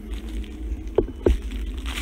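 Steady low wind rumble on a handheld phone's microphone outdoors, with two quick thumps a little past the middle.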